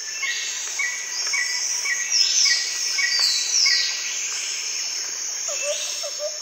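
Recorded nature ambience of insects and birds: a steady high insect trill with short chirps repeating about twice a second and a few falling calls over it. A quick series of lower calls starts near the end.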